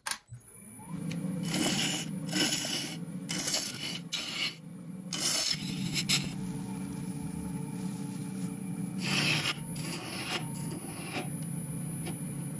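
Wood lathe starting up about half a second in and spinning with a steady hum and a faint high whine, while a gouge cuts into an epoxy resin blank in repeated short scraping passes, each pass the loudest sound.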